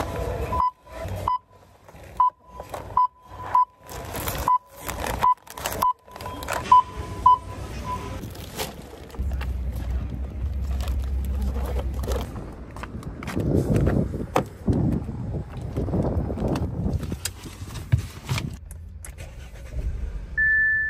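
Checkout barcode scanner beeping as grocery items are scanned: about ten short, even-pitched beeps over the first eight seconds, each with a click of handling. After that come outdoor noise with a low rumble and some clattering handling sounds.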